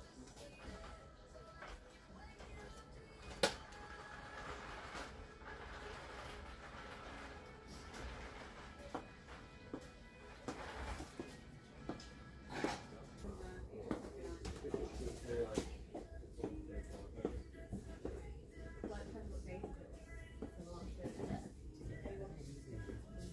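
Shop ambience: quiet background music and faint, indistinct voices, with one sharp click about three and a half seconds in.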